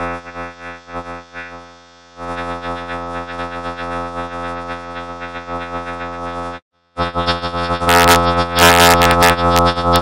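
Heavily processed TV production-logo jingles: a droning, chord-like jingle of many stacked steady tones cuts off abruptly about six and a half seconds in. After a brief silence a second, louder jingle starts, with sharp noisy hits near the end.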